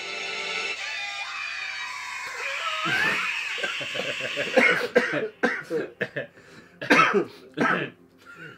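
Trailer music with held tones that stops about a second in, followed by a high yelling voice with rising and falling pitch. From about halfway, two men laugh in short, loud, stifled bursts.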